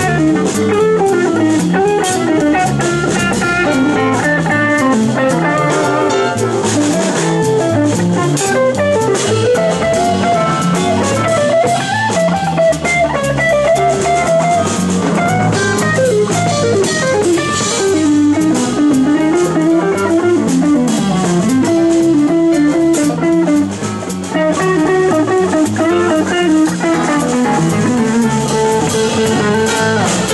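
Live band playing an instrumental passage: a Stratocaster-style electric guitar plays melodic lead lines over electric bass and drum kit, at a steady loud level.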